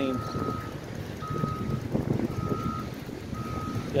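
A construction machine's reversing alarm beeping: four steady, even beeps about a second apart, over a low rumble.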